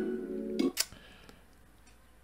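A K-pop song intro's held chord plays and cuts off under a second in, followed by a single sharp click, then quiet.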